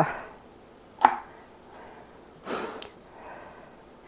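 A santoku knife cutting broccoli florets on a plastic cutting board. The blade knocks sharply on the board about a second in, and a short rasping cut follows a little past halfway.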